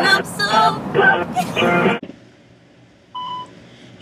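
A woman's voice for about two seconds, then a quiet stretch and a single short telephone beep about three seconds in.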